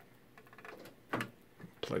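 A single sharp click about a second in, amid faint handling rustle, as the power adapter is plugged in to switch on a Raspberry Pi.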